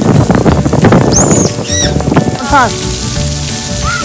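Splash pad water jets spraying and falling onto the wet pad like heavy rain, loudest in the first two seconds or so.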